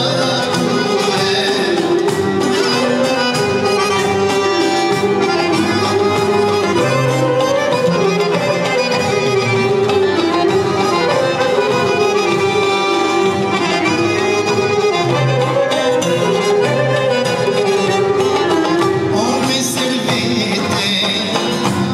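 Live Albanian folk music: an accordion plays a winding melody over a steady, continuous accompaniment.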